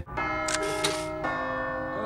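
Film soundtrack: sustained, bell-like chiming chords, changing to a new chord a little over a second in.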